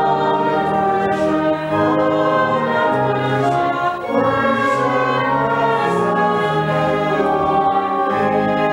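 A congregation singing a hymn or piece of liturgy with church organ accompaniment, in sustained chords that move to new notes every second or so.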